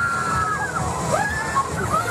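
Riders screaming as a reverse-bungee slingshot ride flings their capsule skyward. One long high scream breaks off under a second in, followed by shorter rising and falling yells, over a steady wash of fairground noise.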